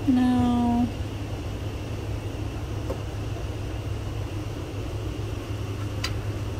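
A woman hums a short, steady 'mm' in the first second, pitch dipping slightly at the end. After that there is only a steady low background hum of the room.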